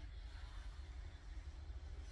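Quiet, steady low hum with a faint, even hiss over it and no distinct event.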